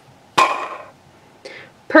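Plastic Candy Land spinner flicked and spun. There is a sudden clack about half a second in as the arrow is struck, with a brief whirr that dies away within half a second.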